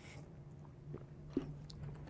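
A man drinking water from a plastic bottle: faint swallowing and mouth sounds, with a few small clicks in the second half, over a low steady hum.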